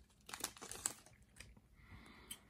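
Foil booster pack wrapper crinkling faintly as the cards are drawn out of it. There are a few short crackles, mostly in the first second.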